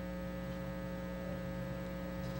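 Steady electrical mains hum, a low buzz with a ladder of overtones that holds unchanged.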